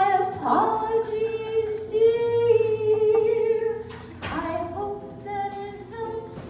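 A woman singing long held notes to a ukulele accompaniment, going quieter in the second half.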